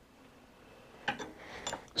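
A few faint metallic clinks and ticks starting about a second in, from steel tooling being handled at the milling machine while a tap is set up.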